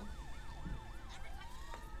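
Electronic emergency-vehicle siren in a fast up-and-down yelp, switching about a second in to a slow rising wail that climbs and holds.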